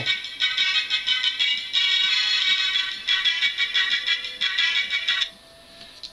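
Musical birthday card's sound chip playing its tune through the card's small disc speaker, thin and high-pitched, powered by button cells held against its wires as a test. The tune cuts off about five seconds in, as the cells are taken away.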